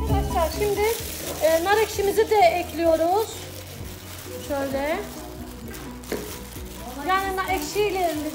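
Gloved hands kneading and squeezing a wet bulgur and pepper-paste mixture in a steel tray: a moist squelching with short squeaky glides from the latex gloves rubbing against the dough.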